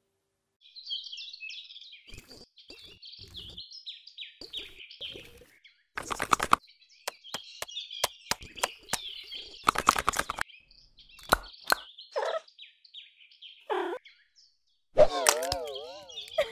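Cartoon soundtrack of birds chirping and twittering, broken by sharp pops, the loudest about six and ten seconds in. Near the end a loud wavering, wobbling sound starts.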